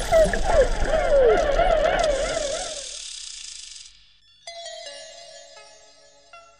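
Underwater recording of Atlantic spotted dolphins calling: quick repeated falling chirps run into a warbling, wavering call, which fades out about three seconds in. About a second later, slow synth music with sparse, separate notes begins.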